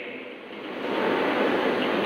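A steady rushing noise without any tone, swelling from about half a second in and holding steady.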